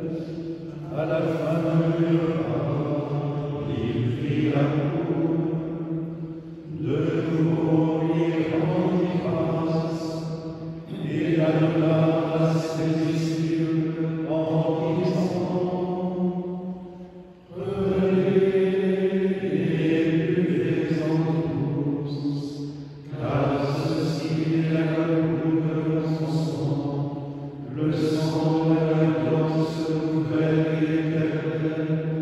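Male liturgical plainchant: long sung phrases of several seconds each on a steady, slowly moving pitch, separated by short breaths.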